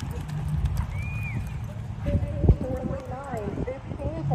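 Hoofbeats of a barrel-racing horse galloping on arena dirt, with one loud thump about halfway through. Voices come in over the second half.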